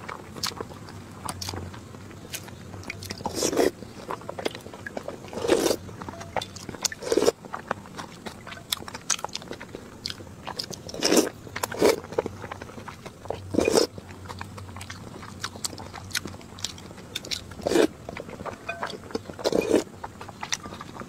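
Close-miked chewing and wet mouth sounds of a person eating whole boiled eggs soaked in chili oil, with many small smacks and clicks and louder wet bites or gulps every couple of seconds.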